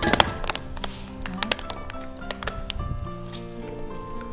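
Background music, over which a plastic measuring cup clicks and taps several times against a ceramic bowl as sugar is measured. The loudest clicks come right at the start, with a brief hiss of pouring sugar about a second in.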